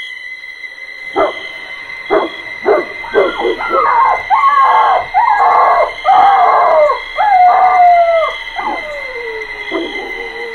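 A dog whining and howling: a few short cries, then longer howls that slide down in pitch, the last one falling away near the end. A steady high-pitched tone runs underneath.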